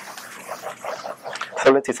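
Chalkboard eraser being wiped across a blackboard, a hissy scrubbing. A man's voice starts speaking near the end.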